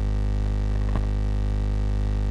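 Steady low electrical hum with a buzzing row of evenly spaced overtones, mains hum carried on the recording, with a faint brief sound about a second in.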